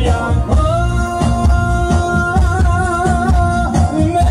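Live amplified song: a male singer holds one long note that wavers with vibrato in its second half, over band backing with a steady beat and heavy bass.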